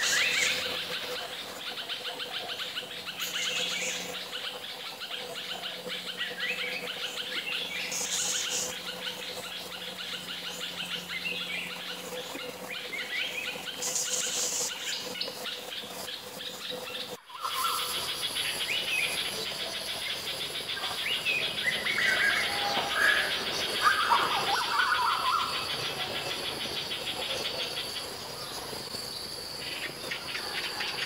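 Stripe-throated bulbul calling in short chirpy phrases over a steady background of insects. About two-thirds of the way through, the recording cuts abruptly to other small birds calling in short bursts over a high, steady insect drone.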